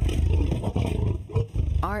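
A tiger growl sound effect: a loud, low, rough growl with a fluttering rhythm. A voice begins speaking near the end.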